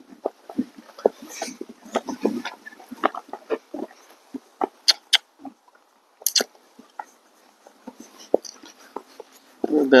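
Irregular clicks and soft knocks from a draft-cross horse being ridden at a walk: hoof falls on dirt and the rattle and creak of its saddle and tack.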